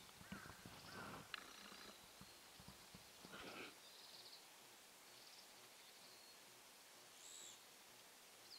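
Near silence with faint bird calls: a few short calls in the first half, then several brief, high, thin chirps.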